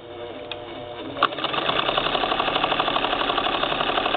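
A 1947 Singer 66-16 sewing machine with a tucker attachment on the needle bar starts stitching. It is quiet for about the first second, gives a sharp click, then settles into a steady, fast, even run of stitches.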